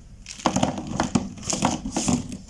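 A handful of plastic felt-tip pens clacking and rattling against each other as they are shuffled between the hands, an irregular run of sharp clicks starting about half a second in.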